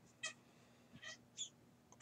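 Near silence: room tone, with three faint, very short high-pitched chirps in the first second and a half.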